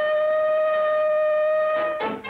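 Factory steam whistle blowing one steady, held note with strong overtones, cutting off near the end.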